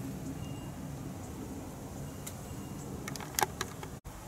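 Steady low background hum, with a quick cluster of clicks and rattles near the end as the clamp meter and wires are handled.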